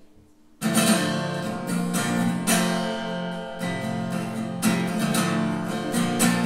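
Acoustic guitar strummed. It starts suddenly a little over half a second in, after a moment of quiet, and the chords ring between the stronger strokes.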